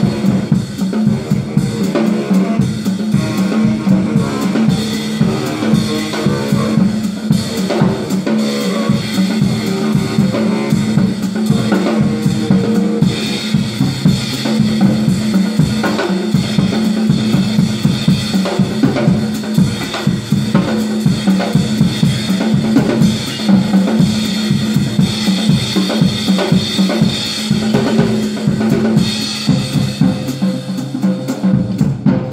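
Drum kit played live in a busy, driving groove of kick drum, snare and rimshots, with no break.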